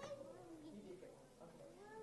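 Faint, distant children's voices chattering, with high sliding pitches.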